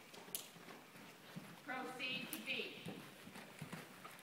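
Horse's hoofbeats on arena footing at a working jog: a few faint, irregular hoof strikes. A faint voice speaks briefly in the middle.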